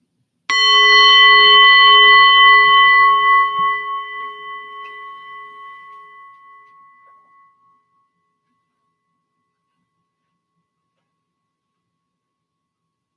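A small meditation bell struck once, ringing with a clear tone and several overtones that waver slowly and die away over about seven seconds. It rings to close the sitting meditation.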